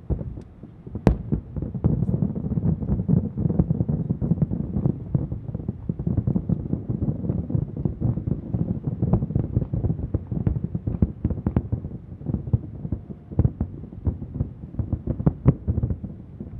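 Distant aerial fireworks shells bursting in a rapid, dense barrage. The booms run together into a continuous low rumble, with sharper reports standing out, the loudest about a second in.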